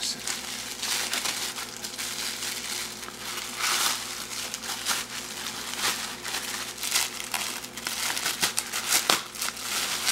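Plastic bubble wrap crinkling and rustling as it is handled and pulled off by hand, in an irregular run of crackles with louder flurries about four, six and seven seconds in.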